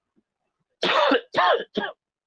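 A man coughing: three short coughs in quick succession, starting about a second in.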